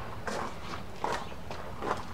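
Footsteps on gravel: several steps at an even walking pace.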